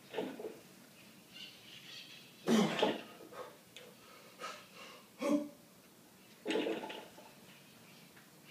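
A weightlifter's sharp, forceful breaths and grunts in four short bursts, the loudest about two and a half seconds in. This is the bracing and straining of a heavy barbell back squat at 365 lb.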